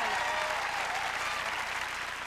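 Audience applauding, the applause slowly dying down.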